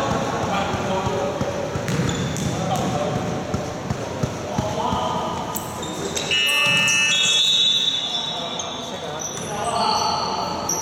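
Basketball game in a gym hall: the ball bouncing on the court with sharp knocks, players' voices, and a burst of high-pitched sneaker squeaks on the floor about six to eight seconds in during the scramble under the basket.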